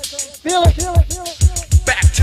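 Hip hop music: a steady, loud drum beat with crisp high hats under a rapped vocal.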